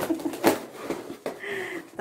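Cardboard shipping box being handled and opened: rustling and scraping of the cardboard, with a sharp knock about half a second in.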